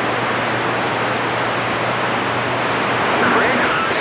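CB radio receiver static: a steady hiss of band noise with a low hum. Faint, distorted voices of distant stations come up through the noise near the end.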